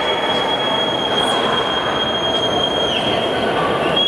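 Arena crowd noise with one long, steady high-pitched whistle held over it that falls off about three seconds in. A second whistle starts near the end and slides downward.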